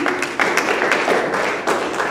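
Audience applauding: many people clapping at once.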